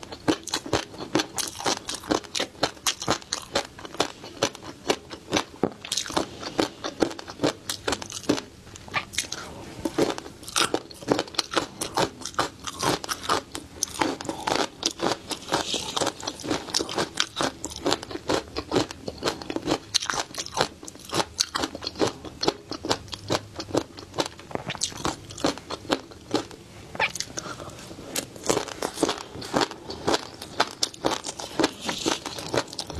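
Close-miked chewing of a mouthful of crispy flying fish roe (tobiko): a steady run of sharp crunches and crackles, several a second, without pause.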